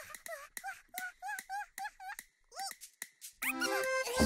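Cartoon character's squeaky wordless chatter: a quick run of short chirping squeaks over the first two seconds, and one more a little later. Near the end a rising flurry of musical tones comes in and grows louder.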